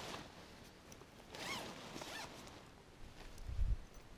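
Zipper on a wingsuit being pulled open in two short zips, about a second and a half in and again just after two seconds. A low rumble follows near the end.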